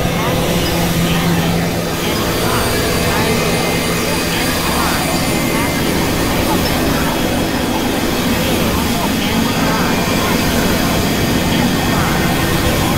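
Experimental synthesizer drone-noise music: a dense, steady wall of noise layered with many held tones and small warbling pitch glides.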